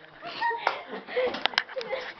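Indistinct voices and laughter from people in the room, broken by several short, sharp clicks or knocks in the second half.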